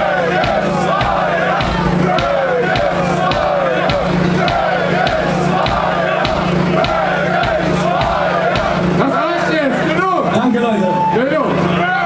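Heavy-metal festival crowd chanting in unison, many voices rising and falling together over a steady beat. About ten seconds in, the chant breaks up into scattered shouts.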